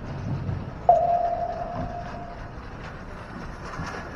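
A single musical note rings out suddenly about a second in and fades away over about a second and a half, from the band's front ensemble on the sideline. It is heard over a low, steady stadium background.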